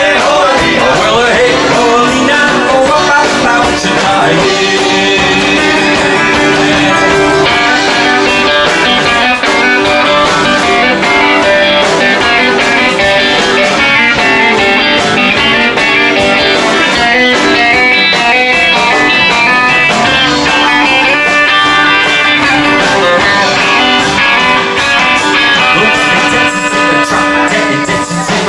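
Live hillbilly boogie band playing an instrumental break: lead electric guitar picking a run of notes over drums and cymbals, at a steady loud level.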